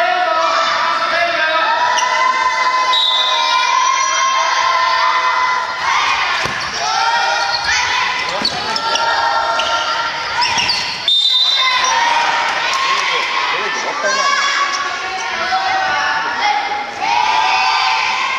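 Children shouting and calling out during a dodgeball game, with the sharp smacks of the ball being thrown, caught and bouncing on the wooden floor several times, one sharp smack about eleven seconds in. Everything echoes in the large gymnasium.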